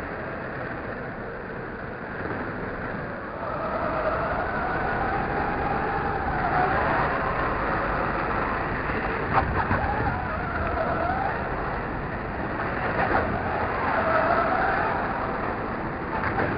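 Radio-controlled off-road cars running on a dirt track: their motors whine, rising and falling in pitch as they speed up and slow down, over the noise of tyres on the dirt. A sharp knock comes about nine seconds in.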